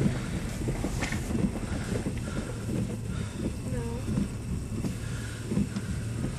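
Car cabin noise while driving: a steady low engine and road hum with rumble underneath, heard from inside the car.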